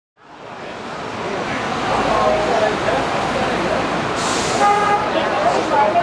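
Busy public-space ambience fading in: people's voices talking over a steady background of traffic-like noise, with a short hiss about four seconds in.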